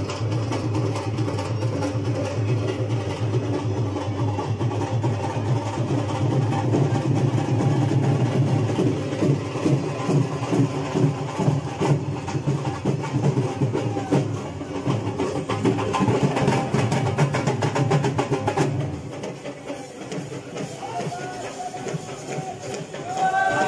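Dhol drum being beaten in a continuous rhythm, with voices under it; the drumming drops away near the end.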